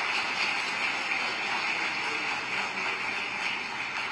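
An audience applauding, a steady spread of clapping.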